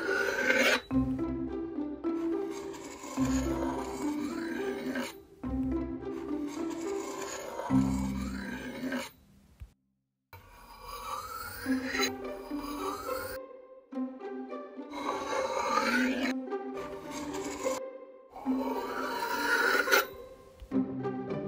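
Metal butter knife slicing through kinetic sand: a series of rasping, gritty scrapes as the blade is drawn through, broken by a few short silent gaps, with background music underneath.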